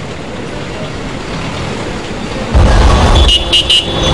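Bus station traffic background, then about two and a half seconds in a heavy bus engine starts to rumble loudly. Three quick high beeps follow near the end.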